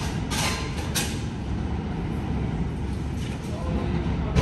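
New York City subway train running on the rails with a steady low rumble, with two short hissing bursts in the first second.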